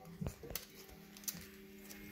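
Faint rustling and a few light taps from paper and card being handled as a AA battery is worked into a paper craft, with a low steady hum underneath.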